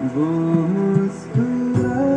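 Classical-influenced Hindi film song playing back: a male singer holding long notes that step from one pitch to the next, over plucked-string accompaniment.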